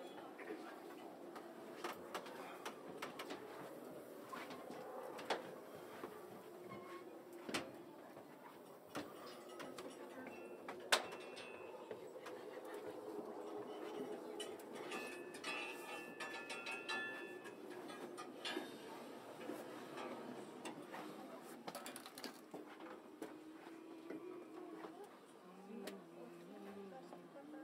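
Low murmur of background voices and shuffling movement of a small group walking through the cramped compartments of a submarine, with scattered clicks and knocks and one sharper click partway through.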